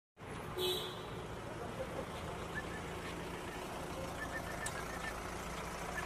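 Street traffic noise: a steady rumble of passing engines, with a short high beep about half a second in and faint chirps later on.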